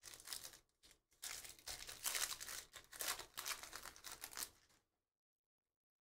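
Foil wrapper of a Panini Prizm football card pack being torn open and crinkled by hand, in a few irregular stretches of rustling that cut off suddenly about five seconds in.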